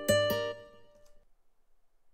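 Sampled plucked-guitar notes from Studio One's Presence sampler playing back a MIDI part. Two last notes are struck just after the start and ring out, fading away within about a second.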